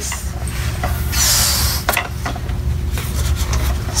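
Latex balloons being handled, with a short rush of air about a second in and a single click just after it, over a low steady hum.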